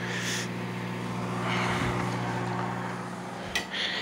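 Microwave oven running with a steady hum, under a faint sizzle from meat frying in a pan. A couple of knife strikes on a cutting board, at the start and near the end, come from an onion being diced.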